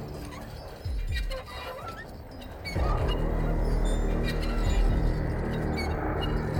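Dark horror film score: low droning tones that thin out, then swell into a loud low rumble about three seconds in.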